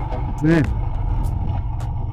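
Motorcycle engine running steadily while riding: a low, even drone.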